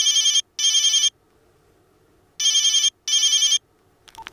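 A telephone ringing with a double-ring cadence: two pairs of short warbling rings, the second pair starting about two and a half seconds after the first.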